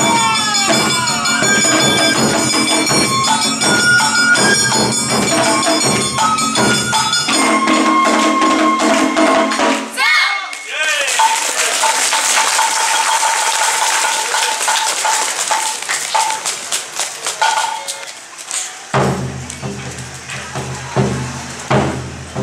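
Awa odori dance music, a band of pitched instruments with a jangling metal percussion beat and voices. It breaks off abruptly about ten seconds in, gives way to a thinner passage with a held high note, and fuller music returns near the end.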